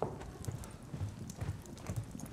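Brisk footsteps of two people walking across a room, short heel strikes at about two a second.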